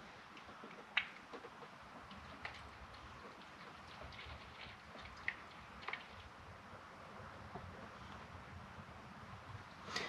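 Faint pour of engine oil from a plastic jug into a funnel, with a few light clicks from the jug and funnel.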